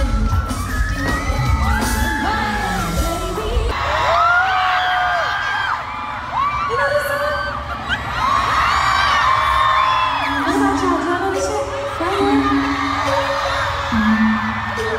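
Live pop concert heard from within an arena crowd: a woman's voice singing long held notes over amplified music, with fans whooping. The heavy bass drops out about four seconds in, leaving mostly voice and lighter backing.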